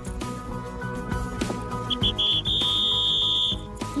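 A sports whistle blown in three quick short toots and then one long blast of about a second, over background music.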